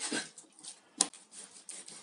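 A Chinese cleaver slicing raw beef on a plastic cutting board: faint rasping strokes, with one sharp knock of the blade on the board about a second in.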